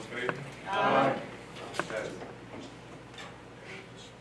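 Indistinct voices in a meeting room, loudest as one drawn-out voice about a second in, with a few sharp clicks.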